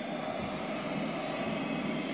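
Steady crowd noise of a stadium from a televised football match, played over loudspeakers in a room.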